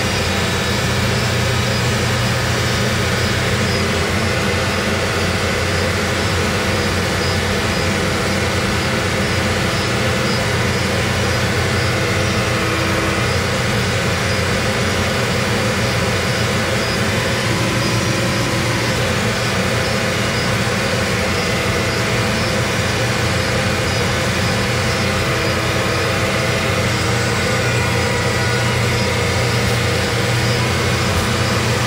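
Heavy equipment's engine running steadily, heard from inside the machine's operator cab.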